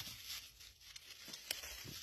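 Dry leaf litter and twigs rustling and crackling faintly under footsteps on a forest floor, with a sharper snap about a second and a half in.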